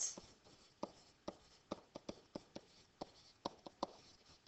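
A pen stylus writing by hand on a digital writing surface: a string of faint, irregular ticks and taps as the letters go down, about three a second.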